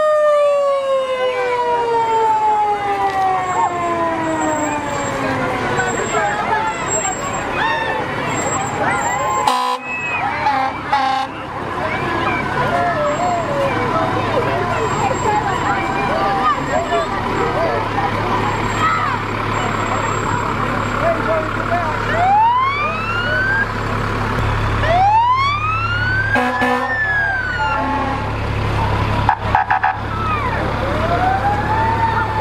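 Fire truck sirens: one winds down in a long falling wail over the first several seconds, and two more rise and fall near the end. Under them, the low steady rumble of a passing fire engine and the chatter of a crowd.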